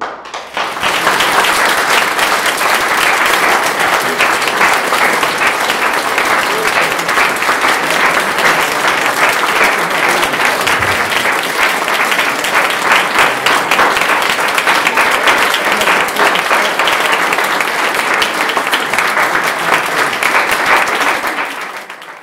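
Audience applauding in a concert hall right after a violin and piano performance ends: the clapping starts about half a second in, holds steady, and fades out near the end.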